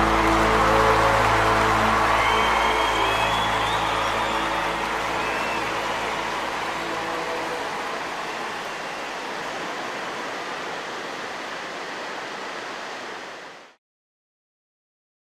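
The last sustained chord of the worship song dies away in the first second or so, leaving a rushing wash of ocean surf. The surf slowly gets quieter and then cuts off suddenly about a second before the end.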